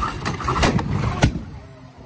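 Top fuel nitro drag motorcycle engine being spun up on a roller starter cart, a loud steady drone broken by three sharp bangs within about a second. The noise falls away about a second and a half in, as smoke pours off the bike.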